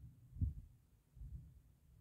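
Wind buffeting the camera's microphone: uneven low rumbles, with a stronger gust about half a second in.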